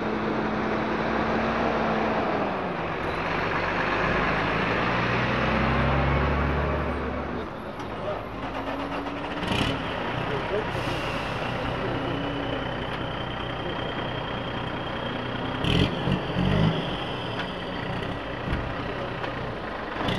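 Heavy diesel truck engines running: a loaded Volvo truck pulls away past the camera, its engine note shifting in pitch and loud for the first seven seconds or so, then fading to a lower steady engine hum with a few sharp knocks later on.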